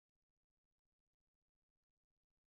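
Silence: a pause between sentences of synthesized speech.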